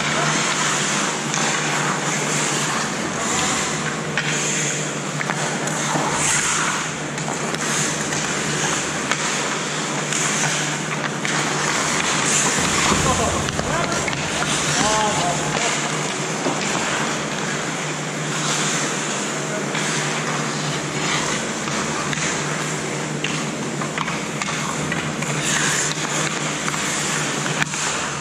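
Ice hockey play: skates scraping and carving on the ice, with sticks and puck clacking now and then and players' voices calling out across the rink.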